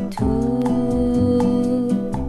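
Music: the instrumental lead-in of a 1967 French pop song, just before the vocal enters. A long held note slides up into place near the start and sustains over a steady accompaniment beat.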